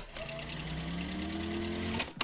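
Podcast sound-design transition: a fast, even, machine-like rattle over a held low drone, with a slowly rising tone.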